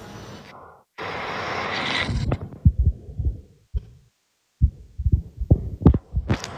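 Irregular low thumps and rumbles on a phone microphone, like wind buffeting or the phone being handled, after a rising hiss. The audio cuts out to total silence twice, briefly.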